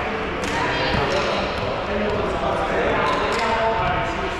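Indistinct players' voices echoing in a large sports hall, with a few sharp knocks of a volleyball bouncing on the court floor.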